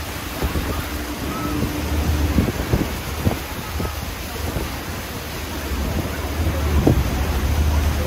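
Wind buffeting the microphone on an open boat deck, over a steady rush of churning river water and a low rumble underneath, with short gusts throughout.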